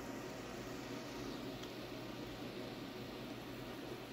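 Steady faint hiss with a low hum underneath from a 4.5 MHz solid-state Tesla coil (HFSSTC) running a plasma flame at its breakout point.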